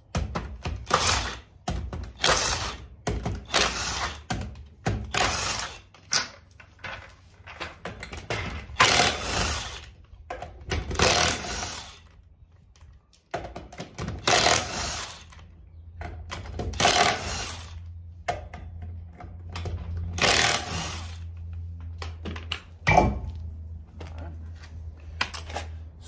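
Cordless impact gun hammering lug nuts loose on a car wheel, in over a dozen short bursts of under a second each, irregularly spaced.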